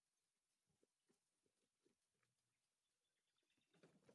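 Near silence: faint rustling and light ticks from a woven plastic sack being handled, a little louder just before the end.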